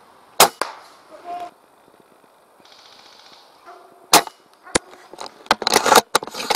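Spring-powered airsoft sniper rifle, a Tokyo Marui VSR-10, firing: two sharp cracks about four seconds apart, then a quick run of clicks and knocks near the end.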